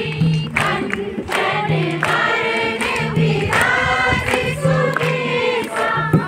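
A group of people singing together in chorus, clapping along, over a low note that repeats about every second and a half.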